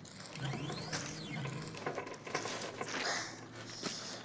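A standing mirror being swivelled and tilted on its frame, giving a run of ratchet-like clicks and rattles with a faint rising-and-falling whistle in the first second and a half.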